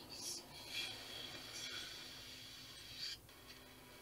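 Faint, thin sound of a TV series playing through a Hometech Alfa 400C laptop's small built-in speakers at full volume, a level the reviewer rates as only medium.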